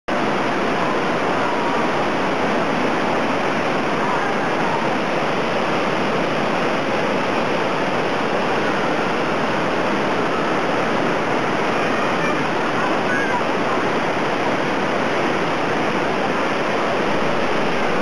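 Steady rushing of falling water, constant in level throughout and cut off suddenly at the end.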